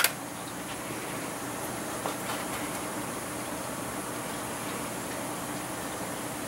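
A single sharp snip of small scissors cutting thread at the very start, then a steady background hiss with a faint light tick or two.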